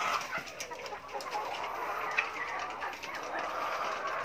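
21-week-old caged laying hens clucking now and then, with scattered light clicks in the background.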